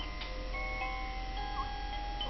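A toy lullaby tune of held, chime-like notes that change pitch, with a few light ticks.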